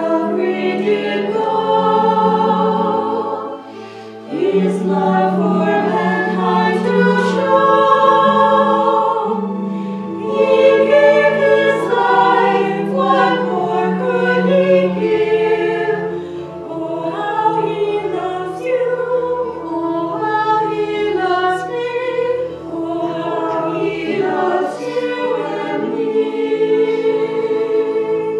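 A small vocal ensemble of four women singing a hymn together in sustained phrases, with a brief break about four seconds in.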